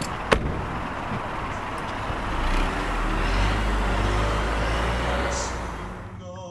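A car's engine running: a low rumble swells from about two seconds in and fades away near the end, over steady street noise. A single sharp click comes about a third of a second in.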